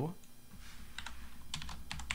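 Computer keyboard being typed on: a quick, irregular run of key clicks that starts a little under a second in.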